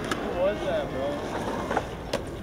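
Faint voices in the background, with a sharp click just after the start and another near the end.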